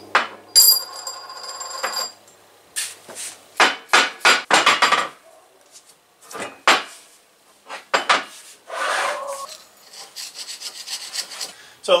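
Steel parts of a backhoe hydraulic cylinder being handled and set down on a steel workbench: a ringing metal clank about half a second in, then a string of sharp clinks and knocks, with a brief scrape about nine seconds in.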